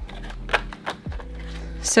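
A laminated card handled and fitted onto an A6 binder's metal rings, giving a few light clicks and rustles.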